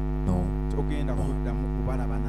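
Steady electrical mains hum in the church's microphone and sound-system feed: a low, constant drone with a buzzy ladder of overtones. A few short amplified spoken words break over it.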